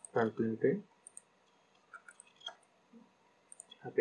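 A handful of light computer mouse clicks, spread over about three seconds between short bits of speech.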